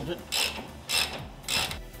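Hand ratchet wrench clicking on a rear brake caliper bolt of a Nissan R35 GT-R, three short strokes about half a second apart.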